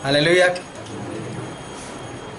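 A man's brief chuckle in the first half second, then quiet room tone.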